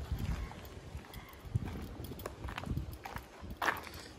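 Footsteps on bare dirt and gravel: a run of soft, irregular steps.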